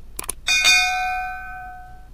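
Subscribe-button animation sound effect: two quick mouse clicks, then a bell ding that rings out and fades over about a second and a half.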